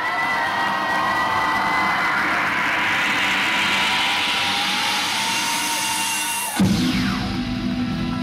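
Electronic dance music from a DJ set: a build-up in which a rushing noise sweep rises in pitch over held tones, then about six and a half seconds in it cuts off and the track drops into a steady bass line, with a short falling sweep.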